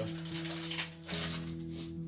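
LECA clay beads rattling as they are poured from a plastic container into a self-watering pot, tailing off about a second in. Background music with long held notes plays throughout.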